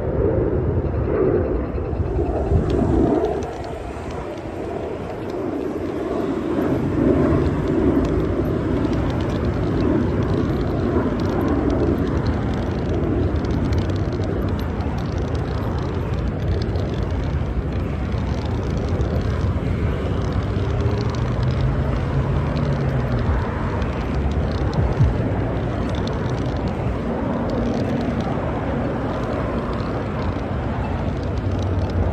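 Steady outdoor traffic noise from a wide multi-lane road, with engines and tyres running continuously; it dips briefly a few seconds in, then comes back up.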